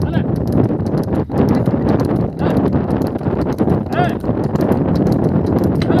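Hoofbeats of bullocks running in a race, over a steady noisy rumble, with a shout about four seconds in and another near the end.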